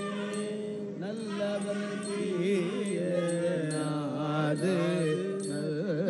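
Hindu priests chanting Sanskrit mantras together, several voices holding long notes that rise and fall slowly in pitch.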